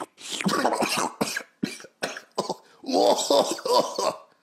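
A man coughing and spluttering on a mouthful of milk: a run of short, harsh coughs, then pitched vocal sounds from about three seconds in.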